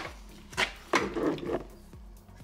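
Wrench on a rear brake line fitting at the caliper as it is cracked loose: a few sharp metal clicks and knocks in the first second, with rubbing handling noise between them.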